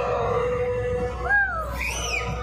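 Children's voices in a busy indoor play area: a long held note, then a short rising-and-falling call and a high-pitched squeal near the end, over a steady low hum and background crowd noise.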